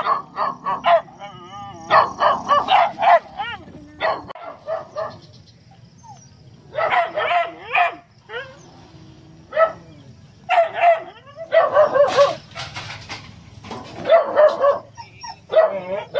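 Dog barking in repeated bursts of several quick barks, with short pauses between the bursts.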